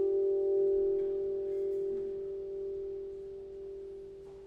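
A sustained keyboard chord with a soft, bell-like ring, held and slowly dying away.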